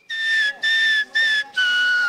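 Whistling: four clear, short notes, the first three on the same pitch and the last a little lower and longer.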